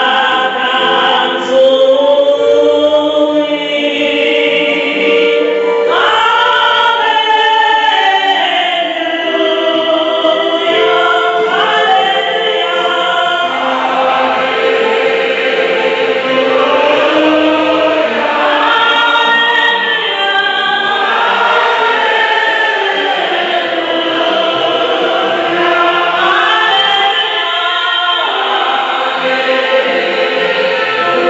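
A church congregation singing a hymn together, led by a woman singing into a microphone. The melody runs continuously in long held notes.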